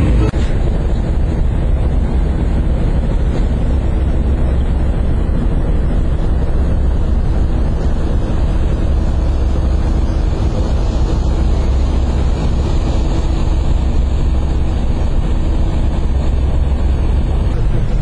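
Large passenger ferry underway, heard from its open deck: a steady low rumble with heavy wind noise on the microphone.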